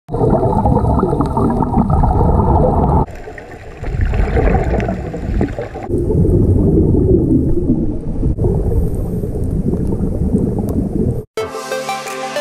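Underwater camera audio of scuba divers breathing through their regulators: a low, rumbling rush of exhaled bubbles that changes abruptly at each cut. Near the end it drops out briefly and electronic intro music begins.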